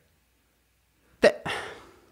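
About a second of silence, then a man's short clipped vocal sound, the start of the word 'the', trailing off into a breathy exhale.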